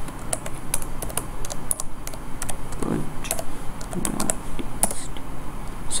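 Typing on a computer keyboard: irregular key clicks, several a second, as a terminal command is entered.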